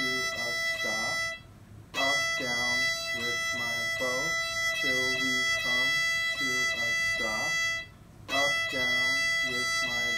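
Violin bowed on one steady high note, with a man's voice singing a simple children's line over it. Twice the bow stops and the sound breaks off briefly, about a second and a half in and again about eight seconds in.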